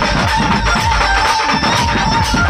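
Loud dhumal band music over a big speaker rig: a wavering lead melody over heavy, rapid drum beats.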